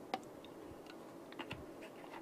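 A few faint, light clicks from a small object being handled in the hands, over quiet room tone.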